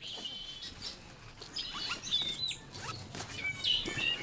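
Small birds chirping in short, high calls, some gliding down in pitch, with the rustle and scrape of a fabric backpack being rummaged through by hand.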